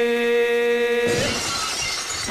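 A held, chanted meditation tone, steady in pitch, cut off about a second in by a crash of shattering glass.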